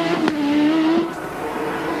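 Benetton Formula 1 car's turbocharged 1.5-litre BMW M10-based four-cylinder engine pulling hard, its pitch rising steadily through the revs. About a second in, the note breaks off and the sound drops.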